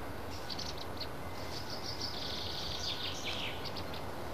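Birds chirping over a steady background hiss: a few short high chirps, then a longer high warbling song that drops in pitch near the end.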